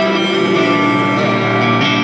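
Live rock band playing a ballad in an arena, with strummed guitar to the fore, heard through the PA from within the crowd.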